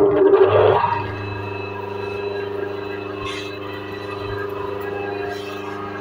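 A 5 hp single-phase induction motor just started from its push-button starter, humming loudly for about the first second as it comes up to speed, then settling into a steady running hum.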